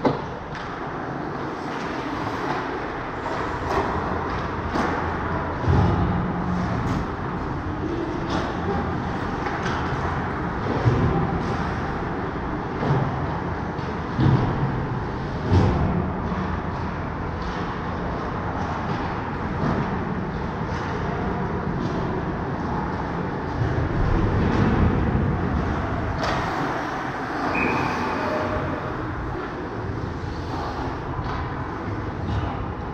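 Ice hockey rink sound during a game: a steady rink hum with scattered clacks of sticks, puck and skates on the ice. There are a few louder thuds about six, fourteen and sixteen seconds in.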